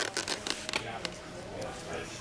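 Handheld camera being moved about: a quick run of light clicks and knocks in the first second, then low rustling handling noise.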